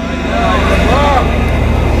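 A steady low rumble with fine regular pulsing, with a faint voice calling out briefly about half a second to a second in, during a pause in a Quran recitation.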